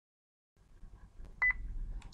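Low background hum and rumble starting about half a second in, with a short high electronic beep of two quick pulses about one and a half seconds in.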